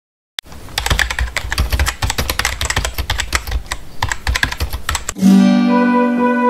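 A fast, irregular run of clicks and light thumps for about five seconds. It stops suddenly as an electronic keyboard chord starts and is held.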